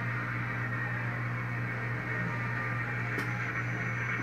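Studio audience applause playing through a television's speaker, an even, steady clatter of clapping over a constant low electrical hum.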